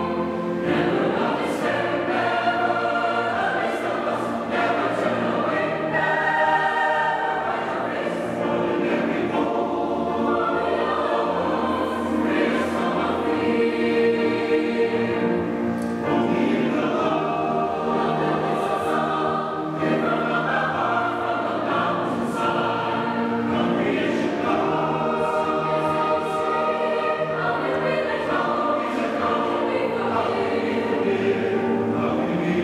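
A large mixed choir of men and women singing in full harmony, moving through sustained chords without a break.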